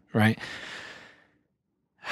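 A man's word "right?" followed by an audible breath out, a sigh fading over about a second; then silence.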